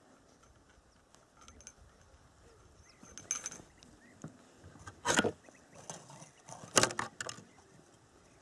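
A few short knocks and clicks from fishing tackle being handled in a boat, the loudest just after five seconds and near seven seconds in, with quiet between them.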